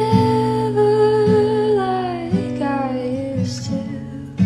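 A woman singing solo with an acoustic guitar: she holds one long note for about two seconds, then her voice steps down lower, while the guitar is strummed under it.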